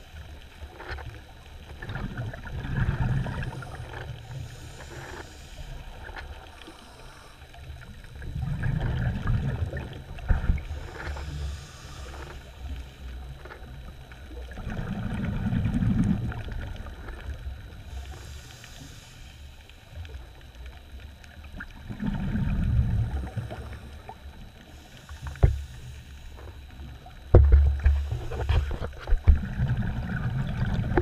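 Muffled underwater sound through a camera housing: low water rumbles swell and fade about every six seconds, with a fainter hiss between them. Near the end come several sharp knocks against the housing.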